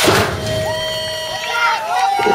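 A BMX start gate slams down at the very start of the clip, and its noise dies away over about half a second. Then there are shouting and cheering voices as the riders sprint down the start ramp.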